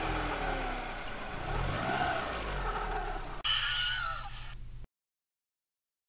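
Car engine running and revving, its pitch rising and falling. About three and a half seconds in a shorter, higher-pitched sound takes over, and everything cuts off abruptly about five seconds in.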